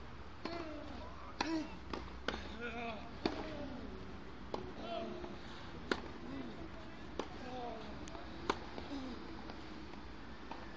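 Tennis balls struck with rackets in a rally: sharp pops come roughly once a second, with two louder hits about six and eight and a half seconds in. People's voices talk in the background throughout.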